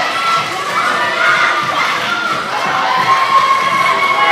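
A crowd of schoolchildren cheering and shouting on the runners in a sports hall, many high voices overlapping without a break.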